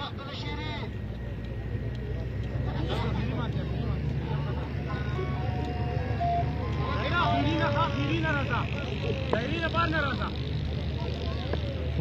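Outdoor cricket-ground ambience: faint, distant voices of players and spectators over a steady low rumble, with the voices a little livelier past the middle.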